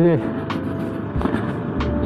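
Motorcycle riding noise: wind rumble on the rider's microphone and the steady running of the KTM 390's single-cylinder engine, with the rumble swelling near the end. A man's voice trails off right at the start.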